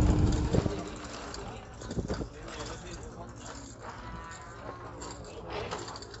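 A cow mooing, one long low call at the start, over steady background chatter.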